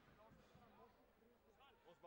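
Very quiet: faint, distant voices talking.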